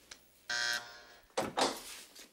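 Keycard door lock buzzing briefly as the lock releases. About a second later the latch clicks and the door swings open with a short rush of noise.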